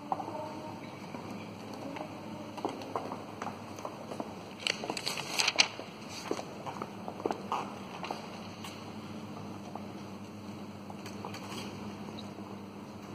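Scattered light knocks, clicks and rustles from people moving and handling things, with a burst of crisp rustling about five seconds in, over a faint steady hum.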